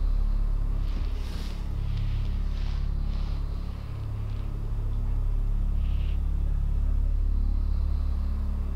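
A low, steady rumbling drone that holds without a break, with a few faint soft sounds over it between about one and three and a half seconds in.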